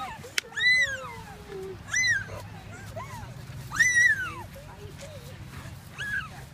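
A puppy whining in four high calls, each rising and falling in pitch and lasting under a second, the loudest about four seconds in. A single sharp click comes just before the first whine.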